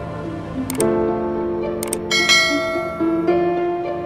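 Background instrumental music with held, slow-changing notes, and two short bright clicks about one and two seconds in.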